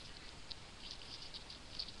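Faint handling noise: a few light, high-pitched clicks and rustles, scattered about half a second, a second, and near the end.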